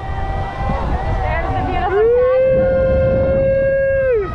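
A rider's voice holding a long whooping call, rising at the start and falling away at the end, with a fainter held call in the first two seconds, over wind rumbling on the microphone.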